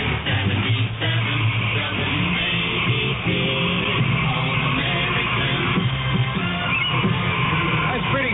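A WABC radio station jingle playing with music, a crowd of fans singing along to it.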